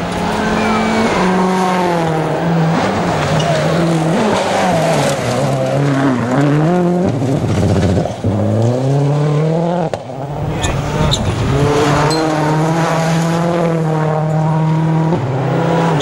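Turbocharged four-cylinder World Rally Cars at full speed on a gravel stage, one after another. The engines rev hard and the pitch climbs and drops in steps through the gear changes, with the hiss and spray of sliding tyres on loose gravel.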